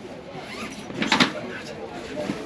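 A Pick-Kit Fence fabric carry bag, packed with flat plastic fence panels, being pulled open. There is one brief rustling swish about a second in.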